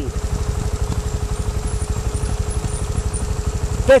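Trials motorcycle engine idling steadily, with an even, rapid pulse.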